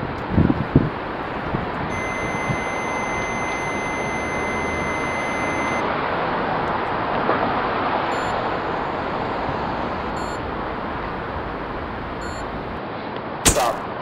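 Electronic alert from a motion-triggered Flash Cam surveillance unit: a steady high tone held for about four seconds, then three short beeps about two seconds apart, and a sharp click near the end, over steady outdoor hiss.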